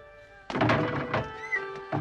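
Drama background music of sustained string tones, broken about half a second in by a sudden loud crash that dies away within a second.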